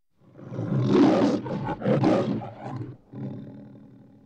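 Lion roaring in the Metro-Goldwyn-Mayer studio logo: two roars about a second apart, the second followed by a shorter growl, then fading away near the end.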